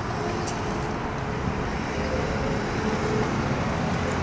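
Road traffic noise from cars passing on the street, a steady hum and rush.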